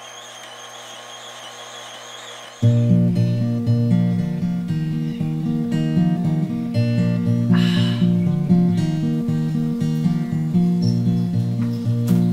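An electric juicer's motor runs with a steady whine. About two and a half seconds in, louder instrumental background music with a guitar starts and carries on.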